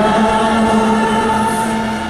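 Voices singing a slow hymn together, holding one long note that fades at the end.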